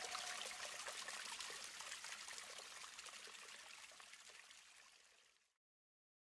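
Faint trickling water, a soft splashing hiss that fades out over about five seconds and then cuts to silence.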